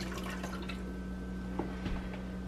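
Water dripping and trickling from a glass measuring cup into a filled Instant Pot inner pot: a few faint, sparse drips over a steady low hum.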